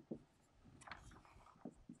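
Faint strokes of a dry-erase marker writing on a whiteboard: a few short scratches about a second in and again near the end.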